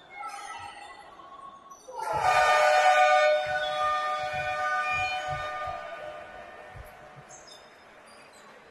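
Basketball arena game-clock horn sounding about two seconds in to end the third quarter: a loud, steady multi-tone blast that fades away over the next few seconds.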